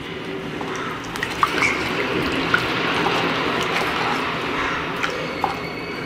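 Wooden spatula stirring thin, watery rasam in a clay pot: a steady swish of liquid with a few light clicks.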